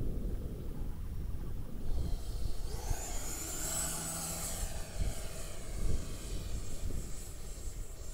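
Twin 64 mm electric ducted fans of a radio-controlled F-15 model jet whining as it makes a low pass. The high whine swells about three seconds in and then fades with a falling pitch as it goes by. Wind rumbles on the microphone throughout.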